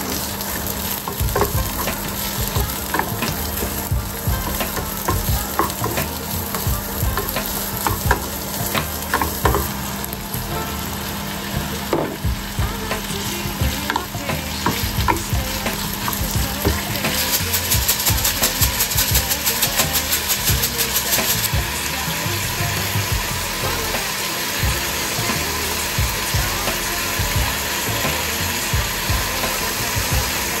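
Onions and then chicken pieces sizzling in oil in a nonstick frying pan, stirred with a wooden spoon that gives frequent light clicks and scrapes against the pan. The sizzle grows louder for a few seconds a little past the middle.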